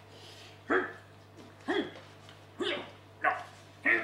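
A man barking like a dog: five short barks, roughly one a second, each dropping in pitch.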